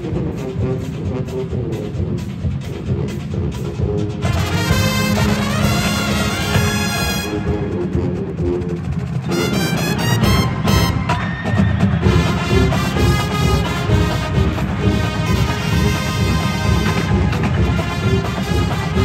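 Marching band playing live: trumpets, mellophones and sousaphones over drumline percussion, in full sustained chords with a rising run about five seconds in.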